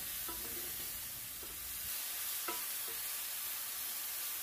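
Sliced button mushrooms sizzling steadily in hot oil in a nonstick frying pan over medium heat as they are stirred with a wooden spatula, being briefly seared, with a couple of faint scrapes of the spatula on the pan.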